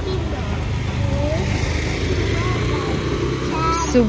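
Steady low outdoor rumble with faint voices in the background; near the end a child's voice starts up close.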